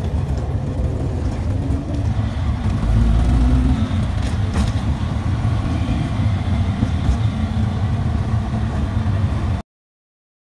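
Auto-rickshaw engine running as it drives, heard from inside the open passenger cabin with road noise. It swells louder for a moment about three seconds in and cuts off suddenly just before the end.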